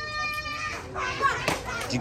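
Children's voices: one child holds a steady high note that ends under a second in, then overlapping chatter among the children, with a short knock about one and a half seconds in.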